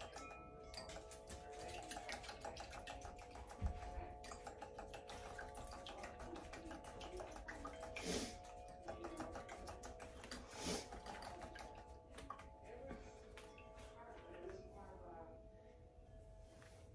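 Two eggs and vanilla being whisked by hand in a small bowl: a fast, continuous run of light clicks as the utensil beats against the bowl.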